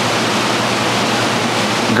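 Steady rushing of water and air bubbling from running aquarium filtration, including air-driven sponge filters, with a low steady hum underneath.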